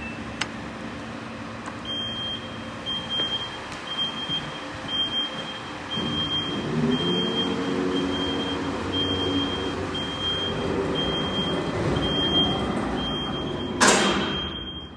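Car elevator's warning beeper sounding a high beep about twice a second as its door closes, after a short beep at the button press. A motor's low hum joins about six seconds in. A sharp knock near the end as the door shuts.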